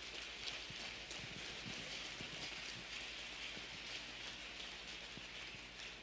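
Audience applauding steadily, a dense patter of many hand claps, over a steady low hum.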